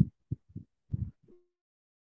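A few short, muffled voice sounds from a video call, then silence about one and a half seconds in.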